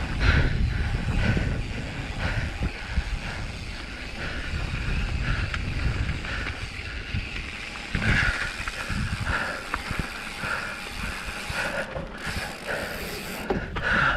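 Mountain bike rolling over a gravel path: tyres crunching, the bike rattling on the rough surface, and wind on the microphone.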